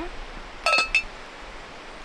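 The metal lid of a red cast-iron teapot is set onto the pot, giving one short clink with a brief ring about two-thirds of a second in.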